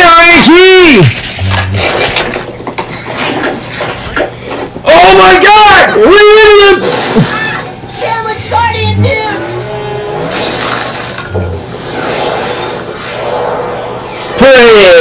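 High-pitched voice sounds that swoop up and down, loud at the start and again about five to seven seconds in, over background music.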